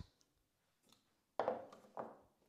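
A Thermomix TM6 lid is set down on a worktop about one and a half seconds in: a short clatter that fades away. Before it there is only room quiet.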